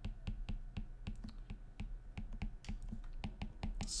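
Stylus tapping and clicking on a tablet screen while handwriting an equation: a quick, irregular run of light plastic taps, several a second.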